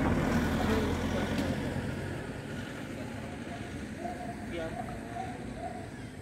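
A low rumble that dies away over the first two seconds, then faint voices talking briefly.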